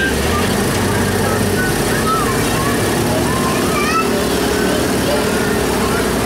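Engine of an old Zoomobile tour tram running steadily as the tram drives slowly along, a low even hum.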